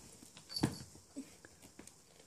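Pembroke Welsh corgi puppy in dog shoes rolling and chewing a plush toy on a wooden floor: faint, scattered scuffles and small grunts, the loudest about half a second in.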